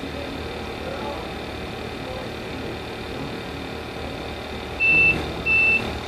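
A trace drug detector's alarm beeping near the end, a loud, steady high-pitched beep repeating about one and a half times a second, signalling that the sample has tested positive for cocaine. Before it, steady background noise while the machine analyses the sample.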